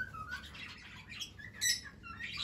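Alexandrine parakeet calling: a few short, soft chirps at first, then one brief sharper call near the end.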